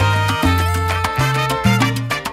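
Salsa band playing an instrumental passage: a bass line moving between notes under quick percussion hits, with held higher notes above, and no singing.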